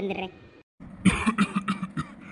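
A voice coughing: a few short coughs about a second in, just after the end of a spoken phrase.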